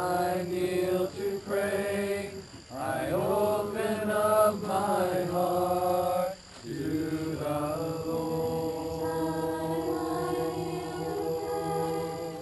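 A mixed group of voices singing a slow worship song together in long held notes, with short breaths about two and a half and six and a half seconds in.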